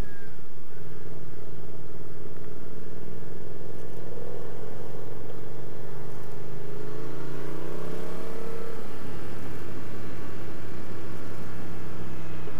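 Yamaha MT-07's parallel-twin engine running under the rider on a mountain road. Its pitch climbs as the bike accelerates from about six and a half to nine seconds in, then drops back as the throttle closes.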